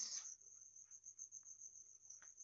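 Faint, steady high-pitched trill of a cricket, continuing without a break.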